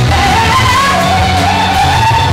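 A woman singing live into a microphone over loud amplified pop backing music with a heavy bass beat; her voice comes in at the start with one long note that wavers up and down.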